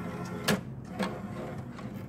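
Criterion II urine analyzer's strip-transport mechanism running as it draws a dipped reagent strip in for reading, a steady mechanical hum with a sharp click about half a second in.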